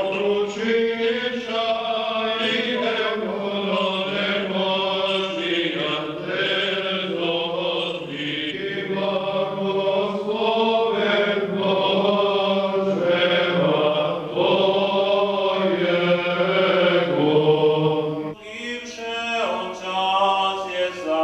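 Orthodox church chant sung by men's voices: a slow melody over a steady low note held beneath it. The held note drops out about two seconds before the end.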